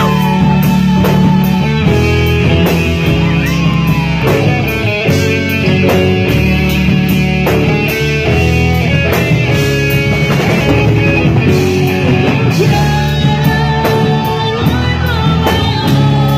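Live rock band playing loudly: electric guitar lead with bending notes over a drum kit and bass, mostly instrumental.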